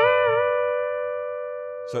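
Electric guitar, a tapped double stop struck once. One note bends briefly up and back at the start, then both notes ring on clean and slowly fade.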